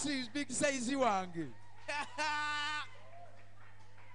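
A voice speaking or laughing that trails off about a second and a half in, then a short, steady held vocal tone just after two seconds. A low steady hum runs underneath.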